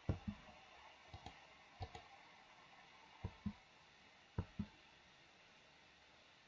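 Faint clicking of a computer mouse and keyboard: five quick pairs of clicks, spread out over a few seconds.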